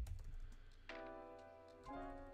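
Computer keyboard typing, a few scattered keystrokes, over soft background music whose held chord comes in about a second in.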